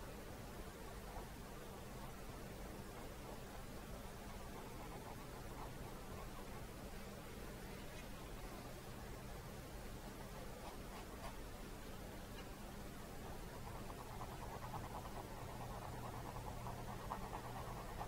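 Quiet room tone with a steady low hum, growing slightly louder near the end.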